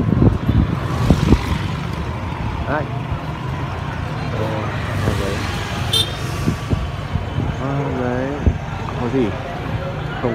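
Busy street ambience: motorbike engines running and passing in a steady low hum, with people talking in the background and a short click about six seconds in.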